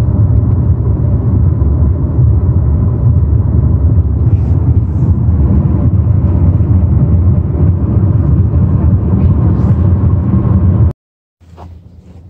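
Road and wind noise inside a car travelling at highway speed: a loud, steady low rumble with a faint steady whine above it. It cuts off suddenly about a second before the end.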